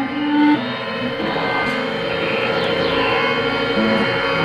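Ambient electronic music from a tablet synthesizer app: a held low note gives way, about half a second in, to a steady warbling drone with a fast pulse, with a few falling high sweeps past the middle.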